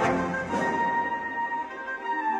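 Orchestral film score. A chord strikes at the start, then a high note is held from about half a second in while the lower instruments drop away.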